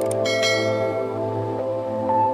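A click, then a bright bell chime that rings and fades over about a second: a notification-bell sound effect for tapping a subscribe bell icon. It plays over steady ambient background music.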